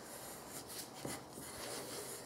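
Wooden pencils scratching on paper in several faint, short strokes as leaves are drawn.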